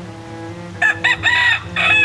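Rooster crowing: three short rising syllables about a second in, then one long held final note near the end.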